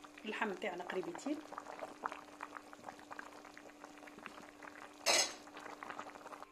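A pot of beef-and-vegetable broth at a rolling boil: a dense, irregular crackle of bubbles popping over a steady low hum. A short, loud noise stands out about five seconds in.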